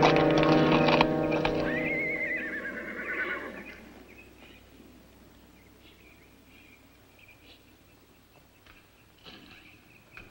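Film-score music fading out over the first few seconds, while a horse whinnies once about a second and a half in: a quavering call that rises briefly, then falls in pitch. After that it is nearly quiet, with a few faint ticks.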